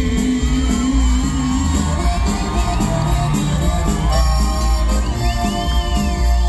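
Norteño band playing live through a loud PA with heavy bass, accordion and guitars, with audience members whooping and cheering over the music.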